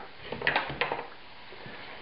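A utensil clicking and scraping against a frying pan a few times in the first second, then a faint steady hiss.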